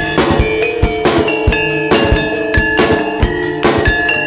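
Javanese gamelan gending accompanying a jaranan dance: struck metallophone tones ringing over a steady drum beat.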